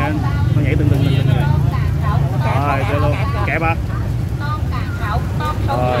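People talking at close range over a steady low rumble.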